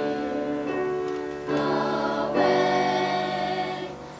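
Small youth choir singing long held notes in harmony, the chord changing about every second, the phrase fading away near the end.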